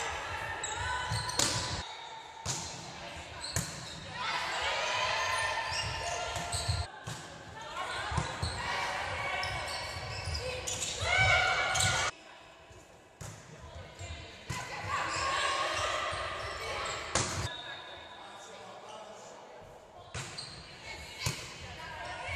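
Volleyball rally in an echoing sports hall: sharp slaps of the ball struck by hands and forearms, with players' calls and shouts, loudest about halfway through.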